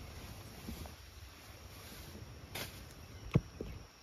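Quiet outdoor background with two brief sharp clicks in the second half, the second one louder: handling noise from the hand holding the leaf and camera.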